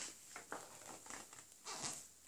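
Faint paper rustling as a page of a paperback picture book is turned by hand, with a longer swish of the page near the end.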